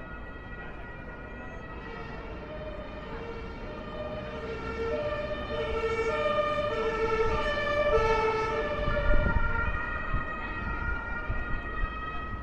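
Two-tone emergency vehicle siren, the German alternating high-low horn, switching between its two pitches under the low rumble of city traffic. It is faint at first, grows louder from about four seconds in as the vehicle comes closer, and is loudest a few seconds later before easing off slightly.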